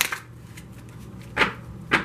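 An oracle card deck being handled after a shuffle: two sharp knocks about half a second apart near the end as the cards are knocked together to square the deck.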